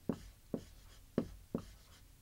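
Marker writing on a whiteboard: four short, sharp strokes as a letter and numbers are written.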